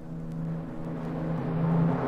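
Opera orchestra swelling in a crescendo: a sustained low note under a rising wash of sound that grows steadily louder.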